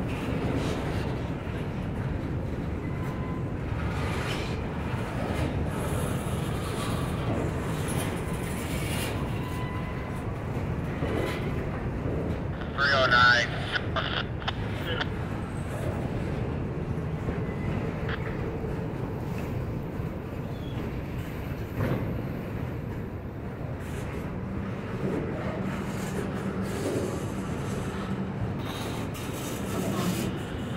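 Freight train of covered hoppers and tank cars rolling slowly past, its steel wheels giving a steady low rumble on the rails.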